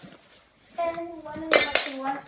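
A short, bright metallic clatter about one and a half seconds in as the metal parts of a vintage Hoover vacuum cleaner are handled, just after a brief voice.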